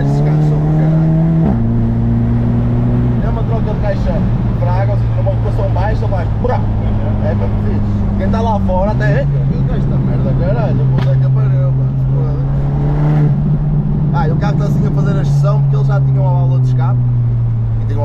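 VW Golf 7 GTI's turbocharged four-cylinder engine with a stage 1 remap, heard from inside the cabin while driving. Its note drops with a gear change about a second and a half in and holds steady. It climbs under acceleration from about nine seconds, then slowly falls as the car eases off near the end.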